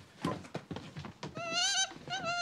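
A few knocks and steps on a wooden stair, then about one and a half seconds in an animal gives a loud, wavering high-pitched call lasting about half a second.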